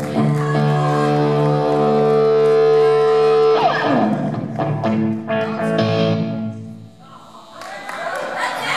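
Distorted electric guitar, a single-cutaway solid-body played through a stack amplifier. It holds a long ringing chord, slides down in pitch about three and a half seconds in, then holds more notes that fade away near the end.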